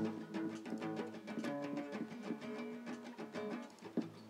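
Acoustic guitar being played, a run of plucked notes that ring on and change pitch from one to the next as a slow tune is tried out.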